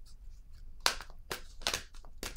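A deck of tarot cards being handled: a quiet start, then about six short, sharp clicks and taps in the second second.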